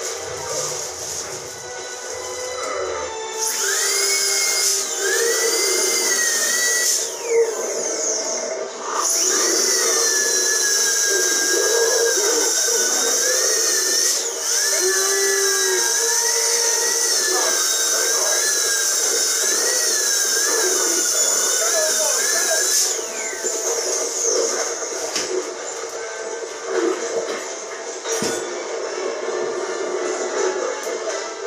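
A dental tool whines at a high, wavering pitch in the patient's mouth. It starts about three seconds in, breaks off briefly, then runs again for about fourteen seconds before winding down and stopping. Background music plays throughout.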